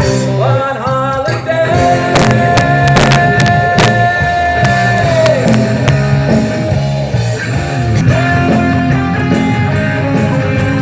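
Live rock band playing: electric guitars over a drum kit with cymbal and snare hits. A long lead note is held from about a second and a half in and bends down at about five seconds.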